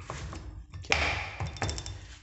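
Aluminium cylinder head of an air-cooled single-cylinder Honda motorcycle engine being set down onto the cylinder and gasket: a sudden metal contact about a second in with a short scrape, then a quick run of small metallic clicks from the cam chain links as the head seats.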